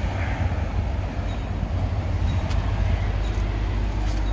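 Power liftgate of a Ford Explorer opening, its motor running steadily, over a constant low outdoor rumble.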